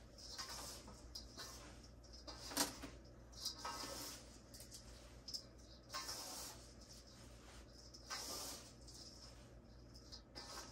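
Hands mixing damp potting soil and perlite in a stainless steel bowl: faint, irregular rustling and scraping, with one sharper knock about two and a half seconds in.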